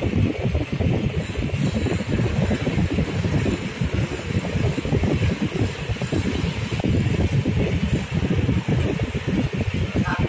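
Continuous low rumbling background noise, flickering rapidly in level without a break.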